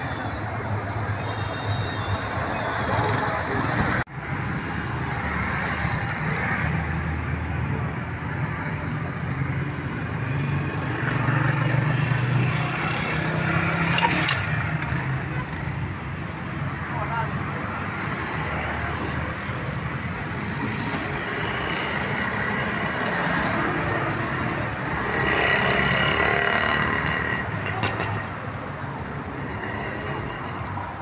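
Street traffic noise: motor vehicle engines running and passing in a steady low rumble, with a brief dropout about four seconds in.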